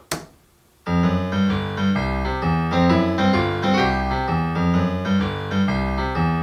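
A single sharp click, then about a second in a software grand piano (Studio One's built-in Grand Piano instrument) starts playing back a recorded MIDI piece: several notes at a time over low bass notes.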